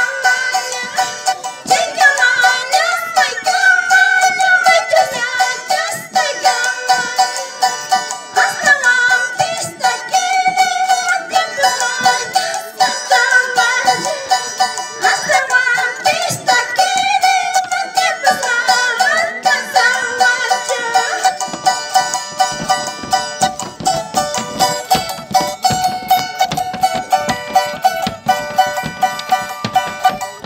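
A woman singing a high-pitched Andean folk song over fast, steady strumming of a charango; the singing stops about 21 seconds in and the charango carries on alone.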